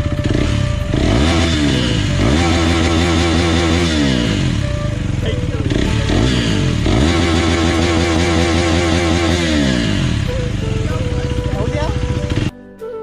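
KTM Duke's single-cylinder engine idling and being revved twice by hand at a standstill. Each time the revs climb, hold high for a couple of seconds, then drop back to idle.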